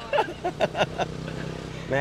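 A young woman laughing in a few short bursts in the first second, then a steady low hum in the background.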